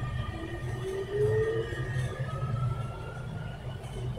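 Barcelona Metro Serie 9000 electric train running, its traction motors whining and rising slowly in pitch over a low rumble as the train picks up speed.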